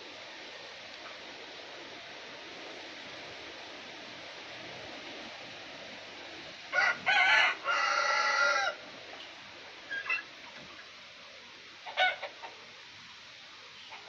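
A rooster crowing once, a loud call of about two seconds starting about halfway through, followed by two short calls over a steady background hiss.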